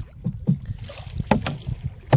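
Water splashing around a wooden fishing boat as a long bamboo pole is worked in the river at the bow. A few sharp splashes or knocks come about half a second and a second and a half in, over a steady low rumble.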